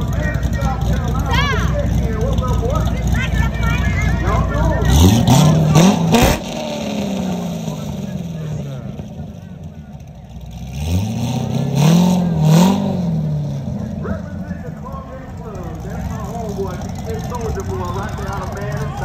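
Chevrolet Corvette V8 engines revving as the cars drive past. There is one hard rev about five seconds in, then another car blips twice around twelve seconds in, each rising in pitch and falling away.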